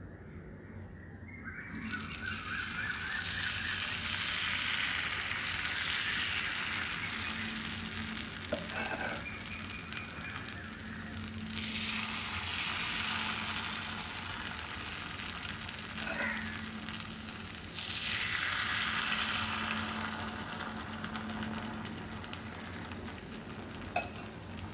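Adai batter sizzling as it is ladled and spread on a hot, oiled iron griddle. The hiss swells and eases several times.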